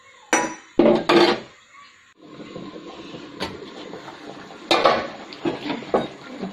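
A metal spoon clinking and knocking against a cooking pan, a few sharp strikes in the first second and a half and another near five seconds in, with the curry bubbling on the boil underneath from about two seconds on.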